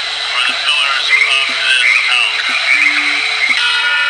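Slow music of held low notes repeating in an unhurried pattern, with a busy layer of high, croaking calls over it.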